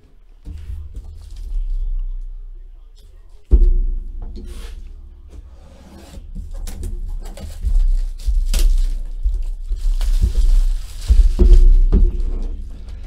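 Plastic shrink-wrap being torn and crinkled off a cardboard box by hand, with many short crackles through the second half. A loud thump of the box on the table comes about three and a half seconds in, and there are more knocks as it is handled. Background music plays underneath.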